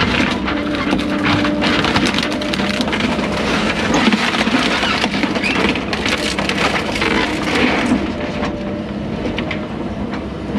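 Hyundai excavator's diesel engine and hydraulics running, heard from inside the cab, with continual cracking, crunching and splintering of broken house framing and boards as the bucket and thumb grab and crush the debris.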